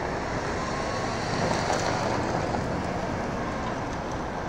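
Steady car noise, the engine's low rumble and road noise, heard from inside a car.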